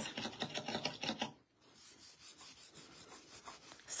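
Rubbing strokes on a metal nail-art stamping plate, as black stamping polish is worked across the etched plate: a quick run of scratchy strokes in the first second or so, then fainter rubbing.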